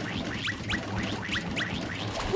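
Cartoon sound effects: a quick run of short rising zips, about four a second, for long stretchy arms flailing out of control.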